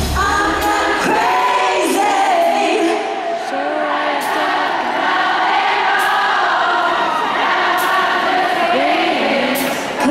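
Live pop concert vocals in an arena, with many voices singing together. The bass and drums drop out about a second in, leaving mostly the singing with light percussion.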